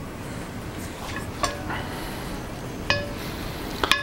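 Butter and olive oil heating in a cast-iron skillet with a steady low sizzle, broken by four light clinks that ring briefly.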